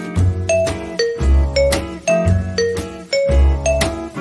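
Background music: a light tune of short struck notes at several pitches over a low bass line that changes about once a second.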